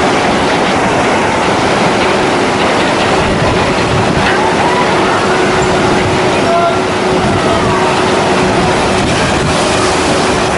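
Log flume in operation: the conveyor lift hill rattles with a steady mechanical hum, over the continuous rush of water pouring down the chute.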